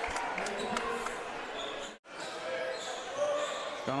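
Basketball being dribbled on a hardwood court, with the echoing background noise of an indoor stadium. The sound breaks off for an instant about halfway through.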